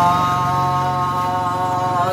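A singer in Muong folk style (hát Mường) holding one long, steady note, with a steady low hum underneath.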